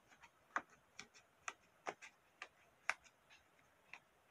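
Pages of a hardcover book being flicked one at a time under a thumb, each page edge giving a sharp tick, about two a second at an uneven pace.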